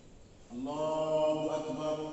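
A man's voice chanting in Arabic through a microphone in a large mosque hall. It begins about half a second in with one long note held on a steady pitch.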